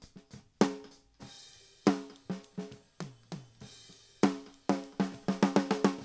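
Snare top microphone track of a multitrack drum recording playing back: snare hits that each leave a short pitched ring, with cymbal and hi-hat bleed, and a quicker run of hits near the end. The track runs through an EQ that notches out the snare's ring and a high-pass filter being raised to clear low-end rumble.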